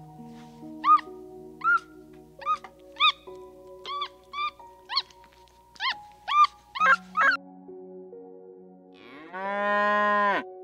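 Over soft background music with held notes, a run of about eleven short, squeaky chirps, each rising and falling in pitch, comes roughly every half second. Near the end a cow moos loudly for just over a second.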